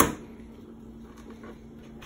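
A single sharp click or knock at the very start, over a faint steady hum.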